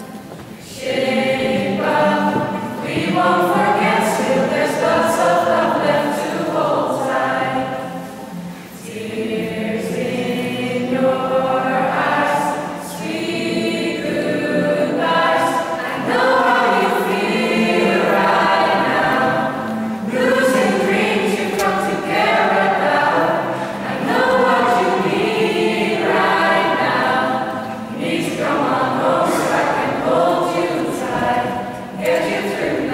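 A group of young men and women singing a song together, in long phrases with brief breaks between them.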